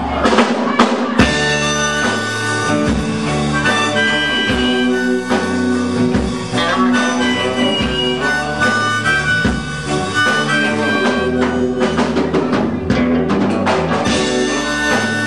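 A band playing live: a drum beat and bass under long, held lead notes that bend a little. The drum hits come thicker near the end.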